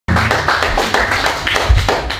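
Small club audience clapping and applauding, many hands at once.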